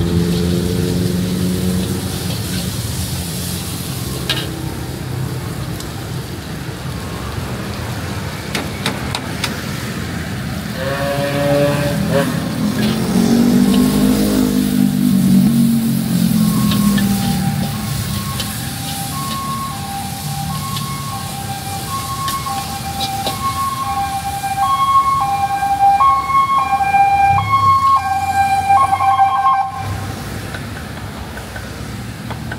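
Road traffic beside the stall: vehicle engines passing, one rising in pitch about eleven seconds in. From about halfway on, a repeating electronic signal of short high notes alternating between two pitches plays until near the end.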